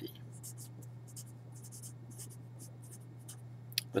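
Felt-tip Sharpie marker writing on paper: a run of short, soft, scratchy strokes as the letters of a word are written, over a steady low hum.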